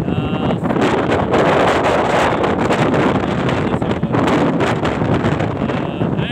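Wind buffeting the microphone from an open window of a moving vehicle, mixed with engine and road noise: a loud, steady rush that rises and falls a little.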